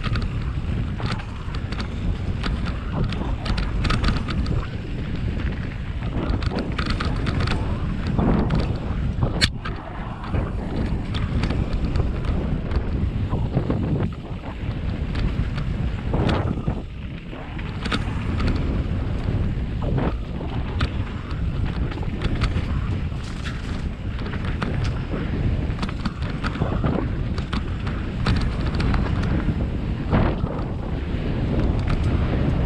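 Wind buffeting the camera microphone as a mountain bike descends a dirt trail at speed, with the tyres rolling over the dirt and the bike knocking and rattling over bumps. A sharp click stands out about nine seconds in.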